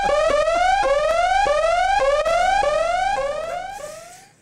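Electronic whooping alarm sound effect: a rising tone repeated about twice a second, fading out near the end.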